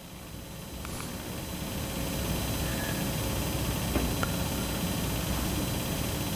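Steady room noise, a hiss over a low hum, growing gradually louder with no speech, and a few faint ticks.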